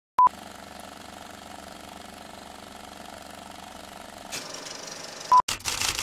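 Intro sound effects: a short sharp beep, then a steady noisy machine-like hum for about four seconds that swells with hiss near the end. A second beep follows, then a sudden cut to silence and a brief burst of noise.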